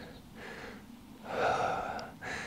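A man's audible breath close to the microphone, swelling about a second in and lasting under a second.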